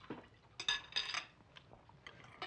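Table cutlery clinking against china plates a few times, short bright ringing clinks.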